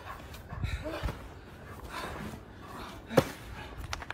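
Two wrestlers grappling against a trampoline's edge: low thuds and a few short yelping cries, then a single sharp smack a little over three seconds in.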